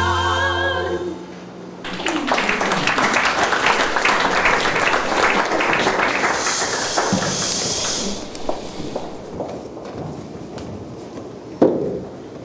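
A choir of voices ends a held, wavering chord about a second in, then an audience applauds for about six seconds, thinning to scattered claps. A single sharp knock sounds near the end.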